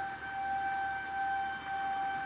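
A steady electronic tone at one held pitch, with a faint hiss beneath it.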